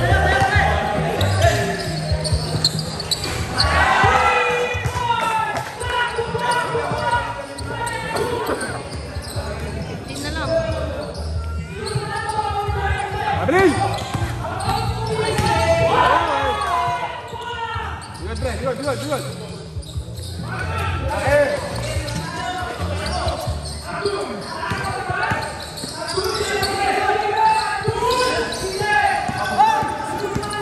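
A basketball being dribbled and bouncing on a hard court during a game, with players' and spectators' voices calling out throughout.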